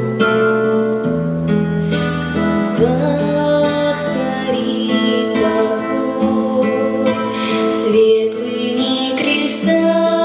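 A girl singing a slow song into a microphone over a recorded instrumental accompaniment with plucked strings.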